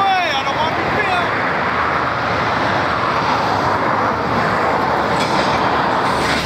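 Steady road and traffic noise at a roadside stop, with a brief indistinct voice in the first second.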